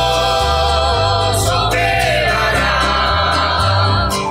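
A group of voices singing a gospel hymn in long held notes over instrumental accompaniment with a steady bass line.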